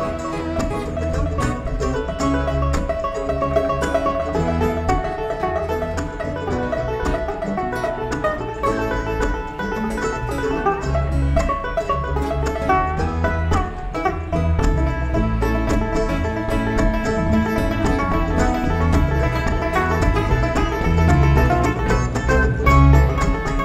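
Live bluegrass string band playing an instrumental break with no singing: picked banjo out front over mandolin, guitar, fiddle and bass.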